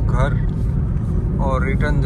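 Steady low rumble of road and engine noise inside a car's cabin while it drives at highway speed.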